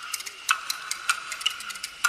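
Kuaiban bamboo clappers, a two-board clapper in one hand and the seven-piece small clapper in the other, played in a quick rhythmic run of sharp clacks. Stronger accents come about every half-second, with lighter rapid clicks between them, as an opening for a clapper-talk song.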